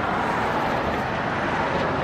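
Cars driving past close by on a city street: a steady noise of tyres and engines on the road.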